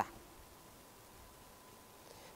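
Near silence: faint room hiss with a thin steady tone, in a pause between phrases of a man's speech, the tail of a word cut off at the very start.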